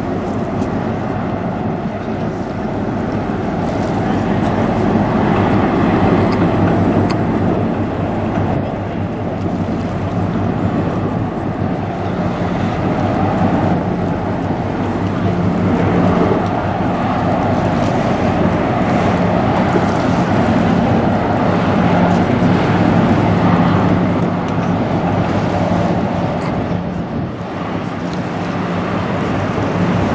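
Diesel engine of a passing chemical tanker running with a steady low drone, with wind noise on the microphone.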